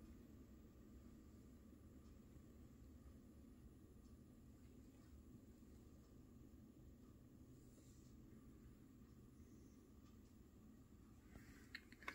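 Near silence: faint room tone, with a couple of soft clicks near the end.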